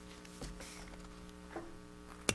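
Steady low electrical hum in the room's microphone and sound system, with a faint knock about half a second in.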